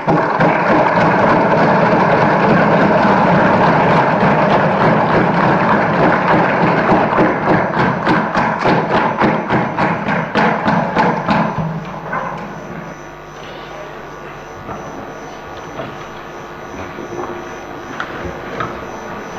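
A chamber full of legislators thumping their desks and applauding, a dense loud din that turns into a rhythmic beat of thumps, about four a second, before dying away about twelve seconds in. After that only quieter hall noise remains.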